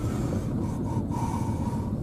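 Car's road and engine noise heard from inside the cabin while driving, a steady low rumble, with a faint high whine for about a second in the second half.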